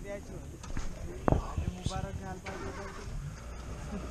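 Low, hushed voices among crowded open safari jeeps, with a sharp knock about a second in, over the low running of a vehicle engine.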